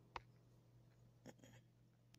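Near silence: room tone with a faint steady low hum and a few faint clicks, one about a fifth of a second in and two weaker ones past the middle.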